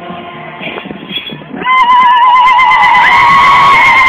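Singing and crowd voices, then, about one and a half seconds in, a loud, high, rapidly wavering cry of ululation that starts suddenly close by and is held to the end.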